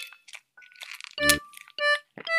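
A hamster biting and chewing a crisp green vegetable stalk, a run of quick small crunches in the first second. Two short musical notes sound in the second half.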